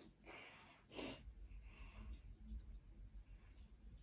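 Near silence: room tone, with two faint breaths in the first second or so.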